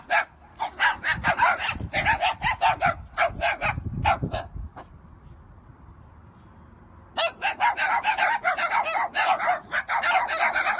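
Dogs barking rapidly, several barks a second, in two bouts with a pause of about two seconds in the middle.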